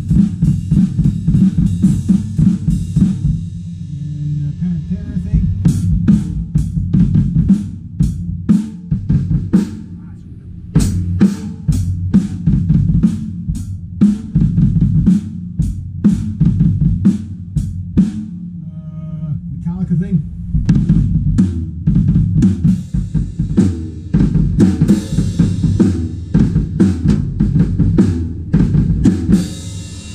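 Acoustic drum kit played with a double bass-drum pedal: fast, continuous kick-drum strokes under snare and cymbal hits, easing off briefly about four, ten and nineteen seconds in before picking up again.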